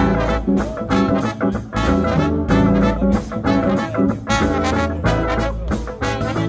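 Live funk band playing: trombone, trumpet and saxophone lead together over electric bass, keyboard and drums keeping a steady beat.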